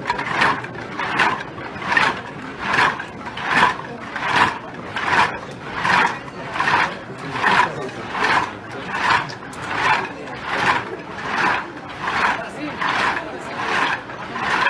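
A large group of people chanting or shouting in unison, one short burst about every 0.8 seconds in a steady rhythm.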